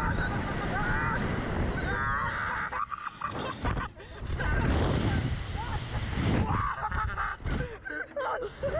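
Two teenage riders on a slingshot ride shrieking with laughter, their voices wavering and shaking, with wind rushing over the onboard camera's microphone.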